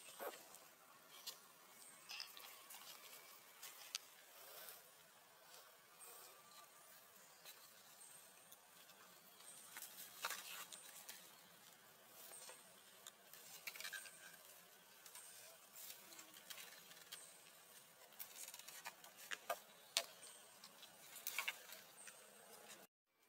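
Near silence: faint rustling and scattered soft clicks of macaques moving over leaves and stone, with a faint high insect chirp coming back every couple of seconds.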